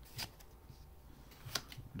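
Faint handling of a stack of Fortnite Panini trading cards, the front card slid off the stack, with a few short clicks of card on card.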